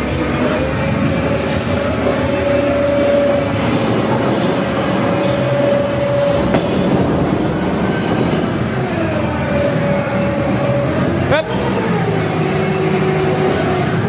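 Winery crush machinery (forklift and grape destemmer) running with a steady rumble and a mid-pitched whine that holds for several seconds, drops out, and returns, while a bin of whole grape bunches is tipped into the hopper. A brief rising sweep comes near the end.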